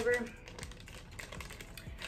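Clear plastic zip bag crinkling and crackling in the hands: a string of quick, irregular, faint clicks.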